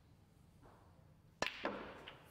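Snooker cue tip striking the cue ball with a sharp click, followed about a quarter second later by a second knock as the cue ball strikes the black.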